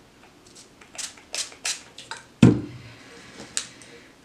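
Small objects being handled on a tabletop: a few short scrapes or rustles, then a louder knock about two and a half seconds in, and a sharp click near the end.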